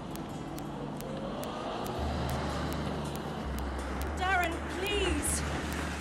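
Small car's engine running at low revs as it pulls up and idles: a low, steady hum that comes in about two seconds in and deepens a little later on.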